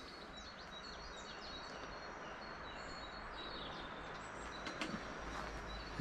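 Faint birdsong, many short high chirps and whistles, over a steady outdoor background hiss and hum, with a few soft clicks near the end.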